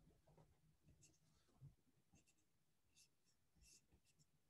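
Near silence: faint room tone with a few soft, scattered rustles and clicks.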